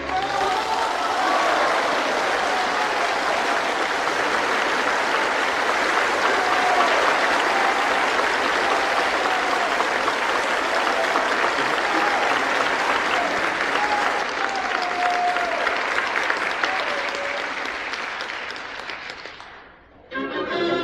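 Opera house audience applauding between numbers, with a few voices calling out over the clapping. The applause fades away over the last few seconds.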